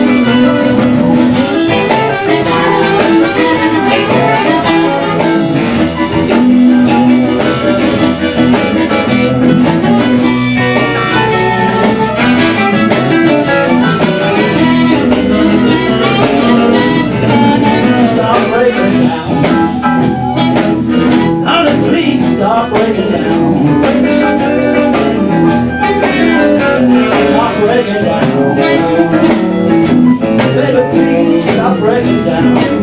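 Live blues band playing a mid-tempo shuffle, with amplified harmonica leading over electric guitar, bass and drum kit.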